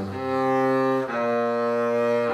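Double bass played with the bow: a sustained note that changes to another held note about a second in, the notes joined smoothly.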